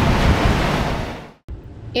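Wind on the microphone and rushing sea water alongside a sailing catamaran, an even noise that fades out to silence about a second and a half in.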